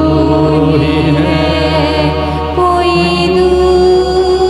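Hindi Christian worship song sung into microphones by a woman and a man over sustained accompaniment chords. The chords change about two and a half seconds in.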